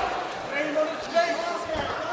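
Men's voices shouting instructions, ringing in a large hall, with the dull thud of a strike landing about a second in.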